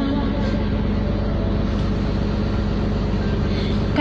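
A river tour boat's engine running steadily, a low even drone heard from inside the passenger cabin.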